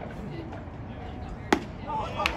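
A single sharp crack about one and a half seconds in: a pitched baseball's impact at home plate. Faint voices sit underneath.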